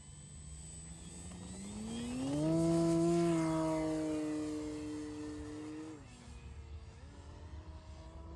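E-flite Extra 300 RC aerobatic plane's electric motor and propeller powering up for takeoff: the whine climbs in pitch and loudness over about a second, then sags slowly as the plane climbs away. About six seconds in the pitch drops as the throttle eases, and it picks up again a second later.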